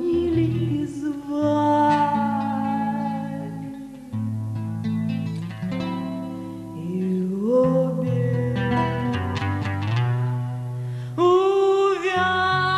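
A woman singing live with acoustic guitar accompaniment, holding long sustained notes; a strong, higher held note comes in near the end.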